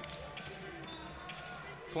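A few basketball bounces on a hardwood court, faint against the hum of a sparsely filled arena.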